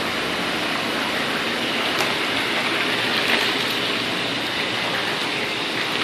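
Water churning and bubbling in a 2014 Marquis Epic hot tub with both jet pumps running: a steady rush of water.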